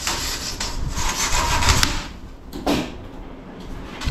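A large sheet of closed-cell urethane foam scraping and rubbing as it is dragged and handled: about two seconds of rasping, then one short scrape a little later.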